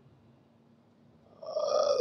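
A pause with only faint room tone, then, near the end, a man's drawn-out "uh" held on one steady pitch.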